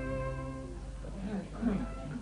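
Bowed-string music ends about half a second in, followed by a murmur of indistinct voices: background chatter of a bar.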